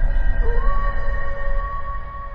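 Intro sting sound design: a deep rumble under a long, held howl-like tone that slides up into place about half a second in, then fades toward the end.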